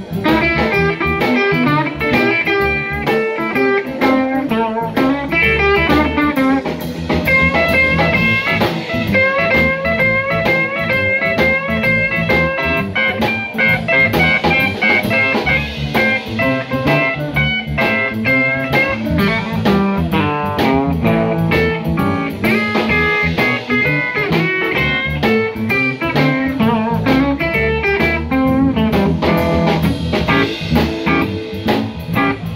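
Live blues band playing: electric guitar lines over a second electric guitar, bass guitar and drum kit, with no singing.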